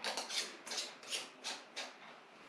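Metal screw bands being twisted onto threaded glass canning jars, fingertip tight: a run of about seven short scratchy rasps as the band threads turn on the glass.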